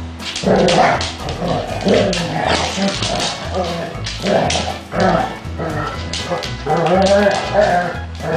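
Basset hounds play-fighting, with repeated play growls and barks starting about half a second in, over background music with a steady bass line.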